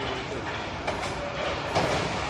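Moscow Metro 81-765 'Moskva' electric train approaching the platform, the rumble of its wheels on the rails growing louder. There are a couple of sharp clicks.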